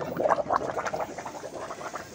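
Flush-machine drain hose sputtering and gurgling into a floor drain as the last of the old coolant, mixed with air, is pushed out of the car's cooling system. The spurts are irregular and die away after about a second and a half.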